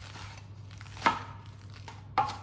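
Kitchen knife chopping lettuce on a cutting board: one sharp chop about halfway through and a lighter one near the end.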